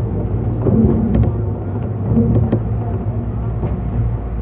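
Meitetsu 6500-series electric train heard from the driver's cab as it rolls slowly into a station platform: a steady low running hum and rumble, with a few short clicks and squeaks over the wheels.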